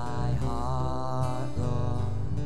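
Live church worship band music: a held, wavering sung note over drums and cymbals, with steady bass notes beneath.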